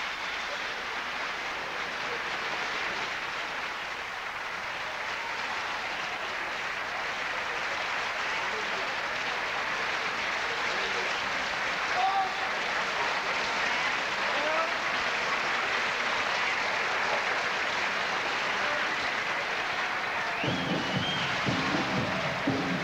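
Theatre audience applauding steadily, with a few short calls or whistles heard in the middle. Near the end, music begins.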